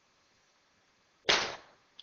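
A single golf shot: a club striking the ball with one sharp crack about a second and a quarter in, fading quickly.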